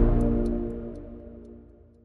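The last sustained chord of a short music jingle ringing out and fading away steadily over about two seconds, with a few faint high ticks scattered through it.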